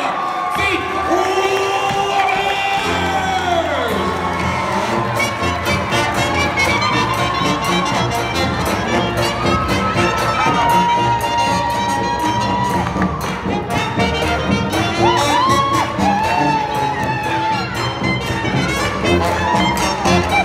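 Crowd cheering and whooping while a live swing band with horns and a sousaphone plays. The band's steady beat comes in about three seconds in.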